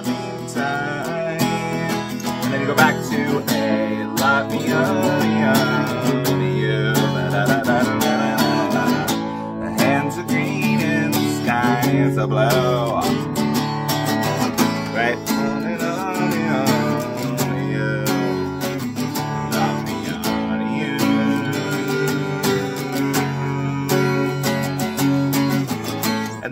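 Acoustic guitar strummed steadily through a chord progression, a continuous run of strokes.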